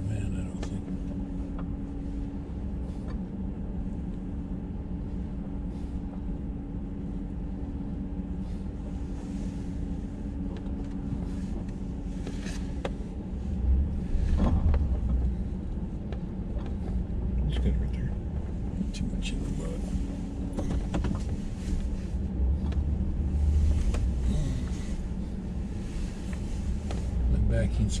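A truck's engine running at low speed, heard from inside the cab, with its tyres rumbling over a wet, muddy dirt road. The low rumble swells heavier about halfway through and again later, with scattered small knocks and rattles.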